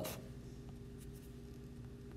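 Faint rubbing and a few light ticks of a stylus on a tablet's glass screen as handwritten ink is erased, over a steady low hum.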